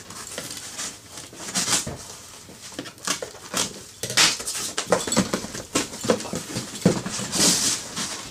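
Large cardboard shipping box being opened by hand: flaps pulled back and cardboard rustling and scraping in a run of short, irregular bursts.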